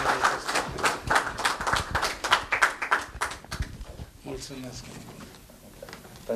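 Applause from a small audience, a few people clapping quickly and evenly, which dies away a little over halfway through; faint voices follow.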